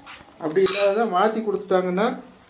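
A person talking, with a light clink of crockery just before the voice starts, about half a second in.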